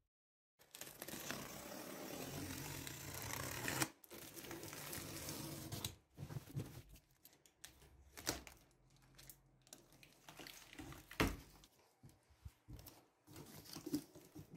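Packing tape being peeled and torn off a large cardboard shipping box, in two long pulls over the first six seconds, then shorter rustles and knocks as the cardboard flaps are handled.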